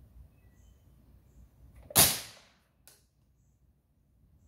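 A single shot from a Daisy 2003 CO2 pellet pistol, a sharp crack that dies away over about half a second, with a faint click just under a second later.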